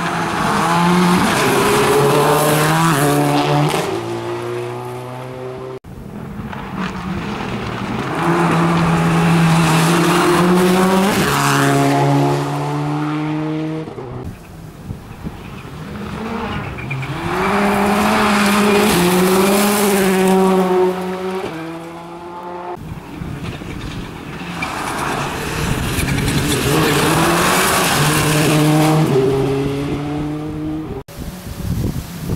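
Rally cars passing one after another at stage speed on a gravel road, in four short edited passes. Each engine revs hard and steps up and down through the gears, with a hiss of tyres on gravel, growing loud and fading as the car goes by.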